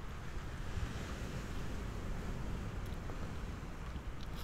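Ocean surf: small waves washing steadily onto a beach, with no single wave standing out.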